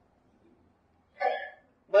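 A near-silent pause, broken about a second in by one short vocal sound from a man's voice lasting about half a second; talking starts again at the very end.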